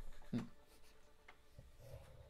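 Quiet handling sounds at a desk: a soft knock about a third of a second in as a drink bottle is set down, then a few faint ticks and light rubbing.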